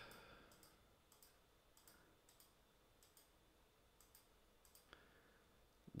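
Near silence: room tone with a handful of faint, scattered clicks from a computer mouse button.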